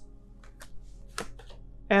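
A lull with a few faint, short clicks and rustles, then a spoken word at the very end.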